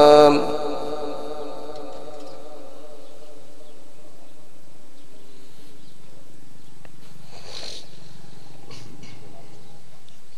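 A Quran reciter's held note ends just after the start, and its echo through the loudspeakers fades over about two seconds. What follows is a quiet pause between verses, with only faint background and a couple of brief faint sounds near the middle and toward the end.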